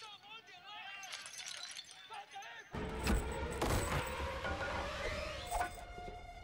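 Film soundtrack: a voice for the first couple of seconds, then a sudden switch to louder dramatic music with a few sharp hits.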